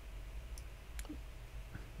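A single sharp computer mouse click about a second in, with a fainter click before it, over a faint low hum.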